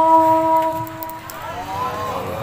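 A boy's voice holding one long steady note of Quran recitation (tilawah) through a microphone and PA system, ending about a second and a half in; fainter voices follow near the end.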